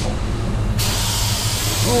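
Automotive paint spray gun spraying, a steady air hiss that cuts off under a second in as the trigger is released. A steady low hum from the spray booth's fans runs underneath.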